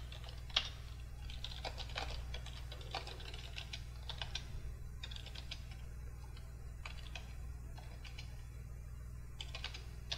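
Computer keyboard typing in quick runs of keystrokes separated by short pauses, with one louder keystroke about half a second in, over a steady low hum.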